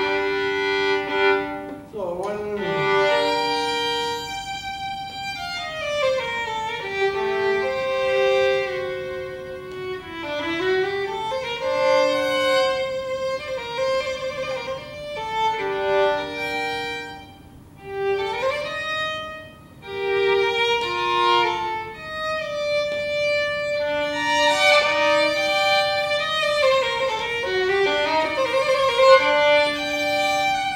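Solo violin playing a slow, sustained melodic passage in an adagio, with audible sliding shifts between some notes and vibrato on the held notes near the end.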